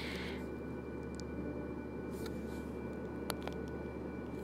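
Soft, brief rustle of a paper panel being pressed and smoothed onto a cardstock card at the start, with a faint tick later on, over a low steady hum of room tone.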